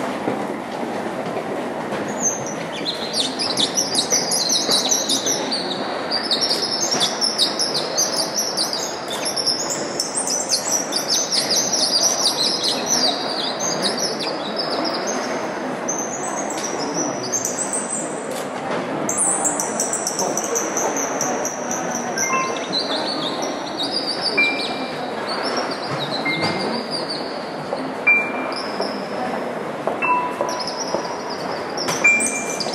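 Imitation birdsong played as part of a live instrumental piece: a long stream of high twittering chirps and short whistles starting about two seconds in, over a steady soft hubbub.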